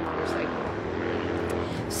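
Motorcycle engine running, loud and steady.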